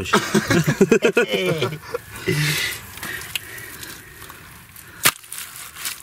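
Digging in wet clay: a short stretch of scraping about two seconds in, then a single sharp knock about five seconds in. A man talks indistinctly through the first two seconds.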